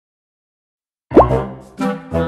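Silence for about a second, then intro music starts with a quick rising pop, followed by short pitched notes over a bass line.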